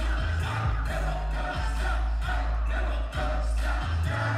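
Live hip-hop music played loud over a concert PA: a heavy, deep bass beat with vocals on top, recorded from within the audience.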